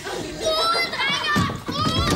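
A group of children talking and calling out excitedly over one another, several high voices at once.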